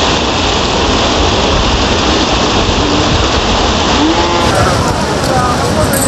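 Turbulent floodwater of the Mahanadi rushing and churning in a loud, steady wash of noise below the Hirakud Dam spillway. The sound shifts in character about four seconds in, and faint voices come through underneath.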